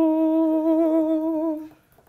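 A man humming one long held note with a slight waver, stopping shortly before the end, while weighing up a decision.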